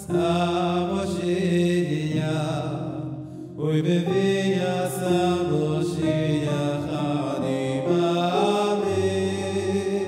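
A man singing a Hasidic niggun into a microphone, to accompaniment on a Roland electronic keyboard, in long held notes with a brief break about three and a half seconds in.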